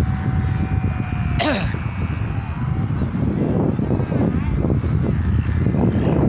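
Wind buffeting the microphone in a steady low rumble, with one short, sharp burst about a second and a half in.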